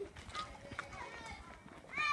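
Faint young children's voices calling, with a few light footsteps on tarmac.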